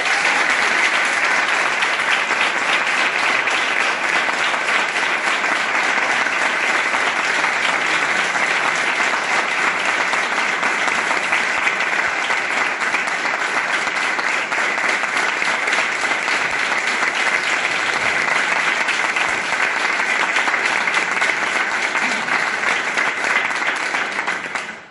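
Audience applause, steady and unbroken.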